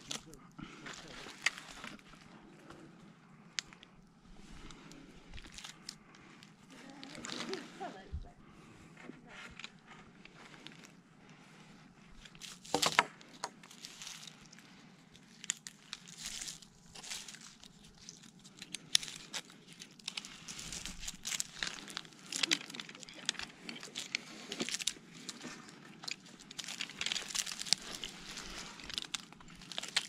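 Rustling and scraping of climbing rope, clothing and bark as a climber works against a pine trunk, with scattered sharp clicks of carabiners and rope hardware at irregular moments.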